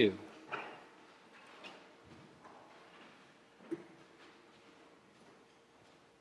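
A congregation getting up from wooden pews: faint rustling and shuffling, with one sharper wooden knock a little past halfway.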